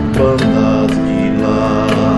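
Music: an electric guitar being played over held, sustained notes with scattered percussive hits.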